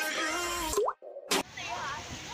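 Background music that ends in a quick rising-pitch sound effect, followed by a brief dropout and a sharp click as the soundtrack cuts to outdoor ambience with faint voices.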